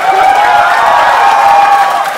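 Studio audience cheering and applauding, loud, with one long held whoop over the noise that fades near the end.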